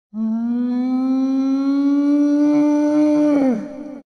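A cow mooing: one long, loud moo that rises slowly in pitch and falls away near the end.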